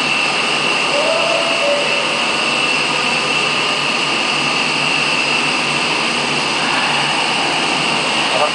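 Aquarium aeration and water pumps running: a loud, steady rushing hiss with a thin high whine and a low hum underneath.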